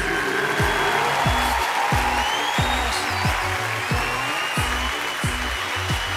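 Show theme music with a steady beat: a deep kick drum about one and a half times a second over bass notes, with the even noise of an audience applauding.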